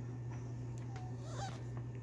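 Trading cards being handled and flipped by gloved hands, with faint clicks over a steady low hum. A brief faint pitched sound comes about one and a half seconds in.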